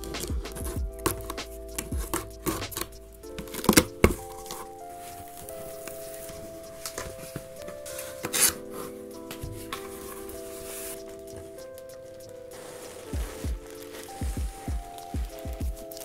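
Background music with held chords, over short clicks, scrapes and knocks from a taped cardboard box being cut open and its flaps handled. The loudest knocks come about four seconds in and again in the last few seconds.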